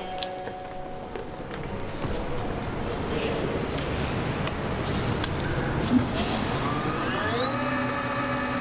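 Electric motorcycle's rear hub motor spinning the lifted rear wheel in free air. It starts about six seconds in with a whine that rises in pitch and then holds steady.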